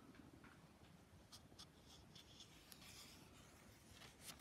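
Faint rustling and a few light ticks of a paper sketchbook page being handled, against near-silent room tone.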